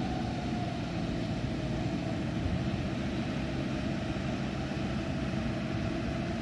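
Diesel engines of two Yanmar rice combine harvesters running steadily as the machines drive slowly across a wet field, a continuous drone with a high whine that drifts slightly lower.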